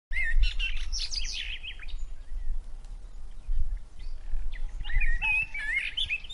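Small birds chirping in quick notes that rise and fall in pitch, in one bout in the first two seconds and another in the last second and a half.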